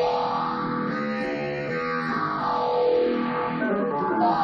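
Automated single-string guitars, plucked by machine, playing a drum-and-bass piece: overlapping sustained string notes.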